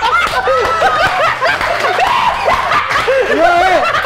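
Several men laughing loudly together, their laughs overlapping in a continuous hearty outburst.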